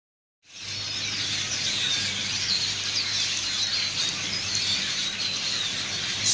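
A large flock of birds calling together in treetops: a dense, continuous chatter of many overlapping chirps that starts about half a second in.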